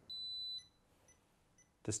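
MEET MP-MFT20 multifunction installation tester giving a single high-pitched beep, about half a second long, just after the start, while an insulation test runs in hands-free mode.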